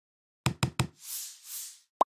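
Logo-intro sound effects: three quick knocks about a sixth of a second apart, then two short swelling whooshes of airy noise, and a brief thud at the very end.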